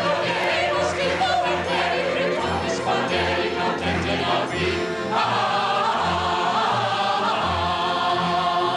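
Large mixed chorus singing a lively stage number with pit orchestra accompaniment, the bass marking a steady beat.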